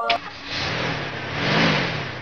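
Car engine sound effect as a car drives in, the engine rising and then falling in pitch once about a second and a half in. Short music ends just as it starts.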